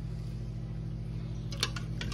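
A steady low hum, with a few light clicks about one and a half seconds in as a slotted spoon knocks against the Instant Pot's steel inner pot.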